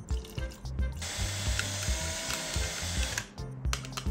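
Cordless drill with a wire mixing attachment running for about two seconds, stirring silicone and gasoline in a glass bowl, starting about a second in and stopping suddenly.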